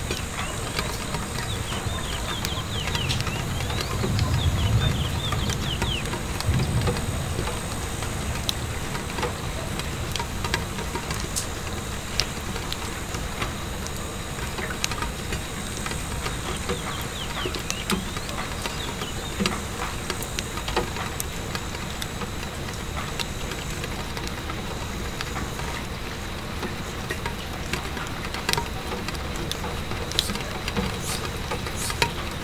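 Steady rain pattering on a window pane, with scattered sharp crackles from a wood fire. A low rumble swells briefly about four to seven seconds in.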